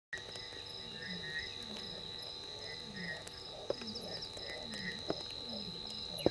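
Night chorus of insects and frogs: a steady high insect trill runs under repeated low, falling frog calls, with a few faint sharp clicks.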